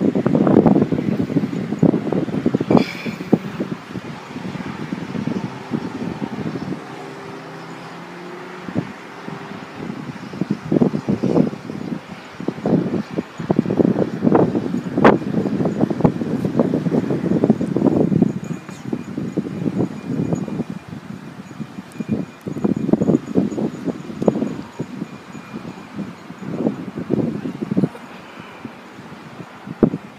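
Wind buffeting the microphone in irregular gusts, a rumbling rush that surges and drops every second or two.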